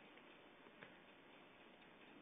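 Near silence: faint background hiss, with a single faint click a little under a second in.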